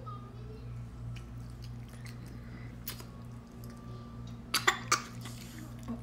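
A young child coughing twice in quick succession, about three-quarters of the way in, over a steady low hum; faint eating sounds otherwise.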